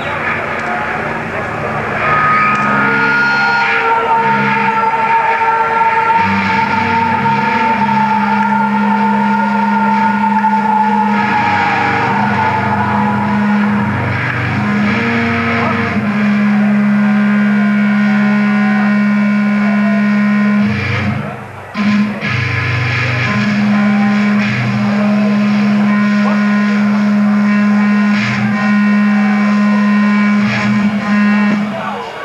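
Live rock band playing a slow, droning passage of long held low guitar and bass notes, with a high sustained tone that slowly falls. The sound drops out briefly about two-thirds of the way through.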